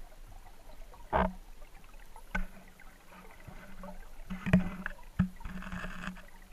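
Underwater sound picked up through a waterproof camera housing: a muffled steady hum, broken by a few sharp knocks and short swishes of water.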